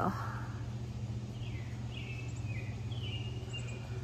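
Outdoor ambience with a steady low hum, and a bird calling a few short, falling notes from about a second and a half in.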